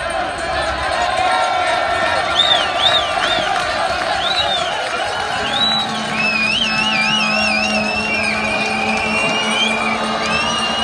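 Podium crowd cheering, with shrill warbling whistles from about two seconds in, over music from the stage loudspeakers.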